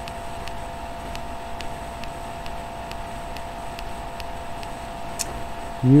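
Steady background hum and hiss, with faint scattered ticks and one sharp click about five seconds in.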